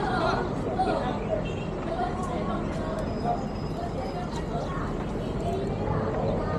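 People talking indistinctly over a steady low background rumble.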